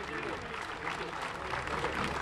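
Audience applauding, a dense patter of many hands clapping, with scattered voices in the crowd over it.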